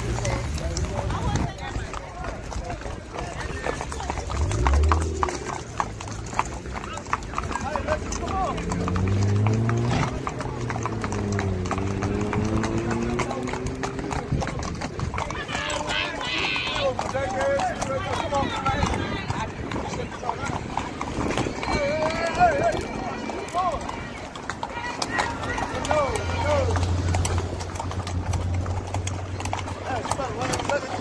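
Horses' hooves clip-clopping on pavement at a walk, several horses at once, with people talking in the background.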